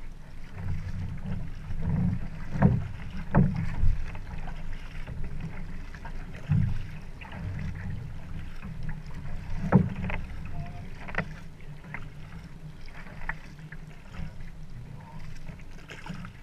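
Water splashing and slapping against a canoe hull right at the waterline, over a steady low rumble of wind on the microphone. A few sharp slaps stand out, the loudest about three seconds in and again near ten seconds.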